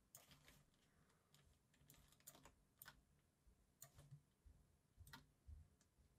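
Near silence broken by faint, irregular clicks of a computer mouse and keyboard, about a dozen of them, as points are placed and handles dragged.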